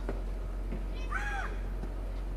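Tennis rally on a clay court: a few light knocks of racket and ball, and about a second in a short high cry that rises and falls.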